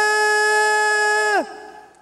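Ring announcer's voice drawing out a single long, held shout, the way a fighter's name is called, staying on one pitch for about a second and a half, then dropping away and fading.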